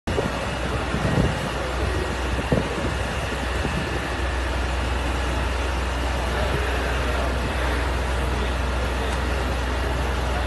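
Fire engine's engine running steadily nearby, a constant low drone. Two brief thumps come in the first few seconds.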